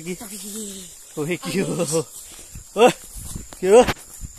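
Voices: a few short spoken phrases and calls, with gaps between them.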